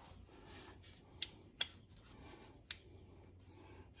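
Hands working the spindle lock on a Kobalt cordless die grinder: faint rubbing of the tool in the hand with three sharp clicks as the lock button is pressed down and slid forward to lock the collet.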